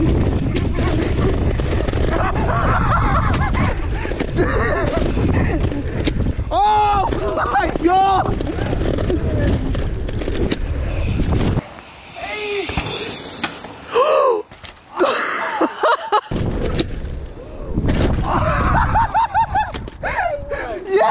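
Wind buffeting the microphone and tyres rumbling over a dirt trail as an electric mountain bike is ridden over jumps, with a few short shouts. The low rumble drops away for a few seconds just past the middle, leaving a hiss.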